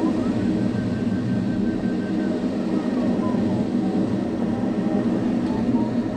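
Steady rush of airflow in an ASW 27 sailplane's cockpit during flight, with a variometer's faint beeping tone. The tone starts high and drops in pitch a few seconds in as the climb weakens on leaving the core of the thermal.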